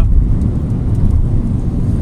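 Steady low rumble inside the cabin of a Hyundai HB20 1.0 hatchback driving at speed: road, tyre and engine noise.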